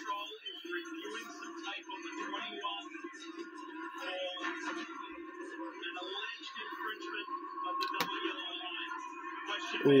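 Television broadcast audio heard through the set's speaker in a small room: voices talking over music. A single sharp click comes about eight seconds in.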